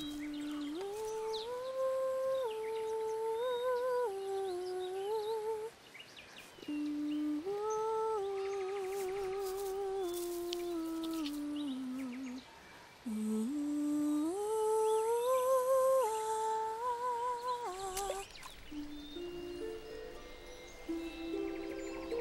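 A lone, slow wordless tune of held notes stepping up and down with small trills, played or hummed in three short phrases with brief pauses between them. Near the end it gives way to soft background music.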